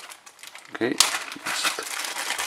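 A thin clear plastic bag crinkling as it is handled and pulled off a small battery pack. It starts with a sharp crackle about a second in, and the crackling goes on unevenly after that.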